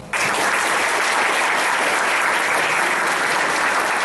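Audience applauding, breaking out abruptly just after the start and then holding steady.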